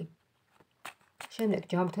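A few short, sharp clicks of a deck of Lenormand cards being handled in the hand, in a pause between phrases of speech.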